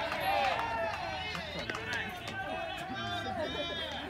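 Several raised voices calling out over one another, loudest in the first second.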